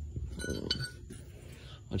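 A light metallic clink of small metal parts being handled, with a short ring to it, a little under a second in.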